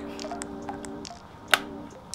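Background music with sustained chords, over small clicks and taps from handling a Sony FS5 camcorder as it is taken from its bag to be switched on; one sharp click about one and a half seconds in is the loudest sound.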